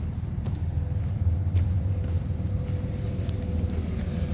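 Steady low rumble of vehicle traffic with a faint steady hum, and a few faint footsteps on gravel.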